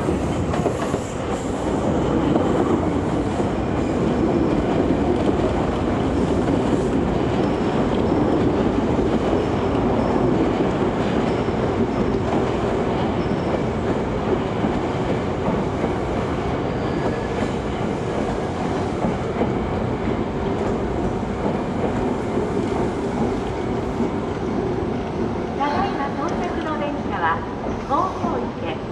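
Eight-car Semboku Rapid Railway 5000-series electric train running along a station platform, with a steady rumble of its wheels on the rails.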